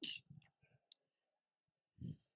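Near silence: a short breathy exhale from the man holding the microphone right at the start, followed by a few faint clicks within the first second.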